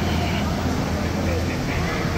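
Shopping-mall ambience: indistinct chatter of nearby shoppers over a steady low background hum.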